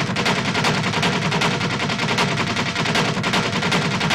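Fast, dense drumming from a film soundtrack's percussion break: a rapid, unbroken stream of drum strokes, like a long drum roll.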